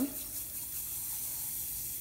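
Steady soft fizzing hiss of baking soda bubbling and foaming in a steel cup as it is slaked.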